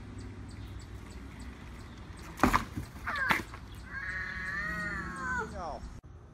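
Two loud knocks, from a small child's bike hitting a plastic wheelie bin, followed by a young child's long wailing cry that holds steady and then falls away at the end.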